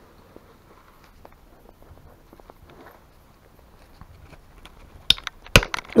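Quiet tool handling, then two sharp metallic impacts about half a second apart near the end, as a very tight screw on an alternator housing is struck and worked loose with a screwdriver.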